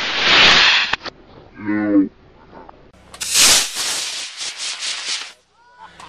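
Model rocket motor hissing at liftoff and cutting off about a second in. A voice calls out briefly, then a second loud rushing hiss starts about three seconds in and fades out after about two seconds.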